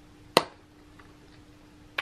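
A single loud, sharp click about a third of a second in, with a faint click later and another short click at the very end, over a faint steady hum.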